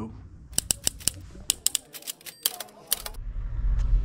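Typewriter-style clicking sound effect: about a dozen sharp, irregular key clicks over roughly two and a half seconds. A low rumble rises near the end.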